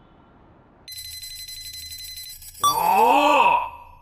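Sci-fi laboratory machine sound effects: a steady electronic tone pattern over a low hum starts about a second in. Near the end a louder wavering sound glides up and down in pitch.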